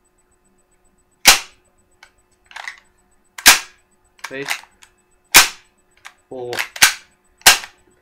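Spring-powered M945 airsoft pistol cycled by hand with the trigger held in: each time the slide is pulled back and let go, the spring piston releases with a sharp bang. Five cracks, about two seconds apart at first and closer together near the end.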